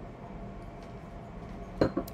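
A man taking a quick sip of a drink for a dry throat: faint clinks of the cup over a low steady hum, with one short sound near the end.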